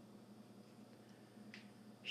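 Near silence: room tone with a faint steady low hum, and a small click about one and a half seconds in.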